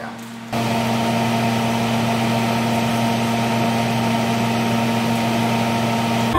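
Mains-powered electric appliance running with a steady hum, switching on abruptly about half a second in.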